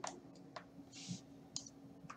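Faint scattered clicks from drawing on an on-screen whiteboard with a computer input device, with a short soft hiss about a second in, over a faint steady hum.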